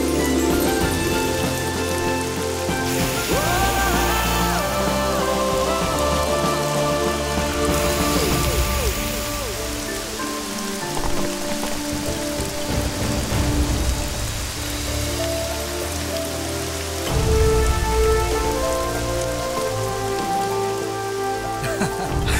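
Steady rain falling on pavement, under a film score of long held notes and low bass.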